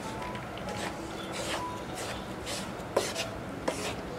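Wooden spatula scraping and stirring crumbly gram flour and ghee in a pan as the besan is roasted, a rough rubbing scrape about once a second. There are two sharp clicks of the spatula against the pan near the end.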